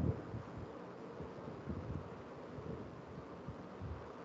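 Faint room noise and hiss picked up by an open video-call microphone, with a few soft low bumps and rustles.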